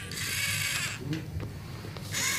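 LEGO Mindstorms NXT servo motor running a plastic LEGO gear train, a high-pitched gear whir lasting just under a second before stopping, followed by a couple of faint clicks.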